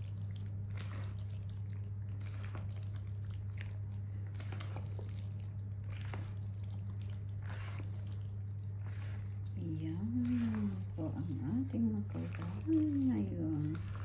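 Macaroni salad thick with mayonnaise being stirred and folded in a plastic bowl with a spatula and spoon: repeated soft, wet squishing strokes over a steady low hum. A voice is heard from about ten seconds in.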